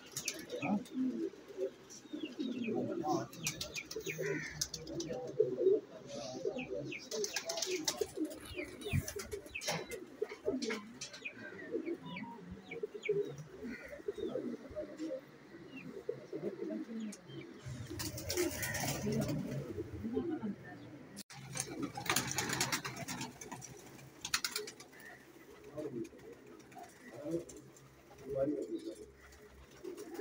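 Many domestic pigeons cooing together in a loft, the calls overlapping without a break, with scattered short higher chirps. There are a couple of brief rushing noises about two-thirds of the way through.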